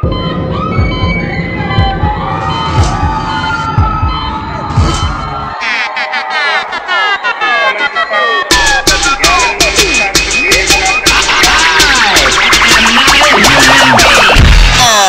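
Dance-show music playing loudly through a PA: the beat drops out at the start, leaving sweeping, swooping synth glides, and a fast run of beats comes back about eight and a half seconds in.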